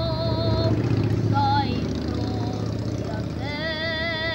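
A boy singing long held notes with a steady vibrato, breaking off between short phrases. A steady low hum runs underneath.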